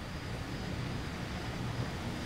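Quiet, steady background ambience with a low hum and no distinct event.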